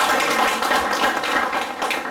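Audience applause: many hands clapping in a steady, dense patter.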